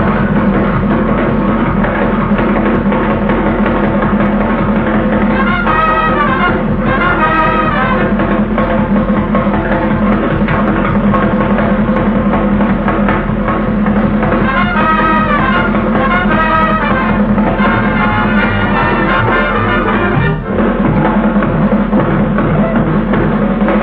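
Archival 1938 live radio broadcast of a swing big band playing at a very fast tempo, drums driving under brass section figures. The recording sounds thin and old, with a steady low hum, and has a short splice near the end where it was trimmed.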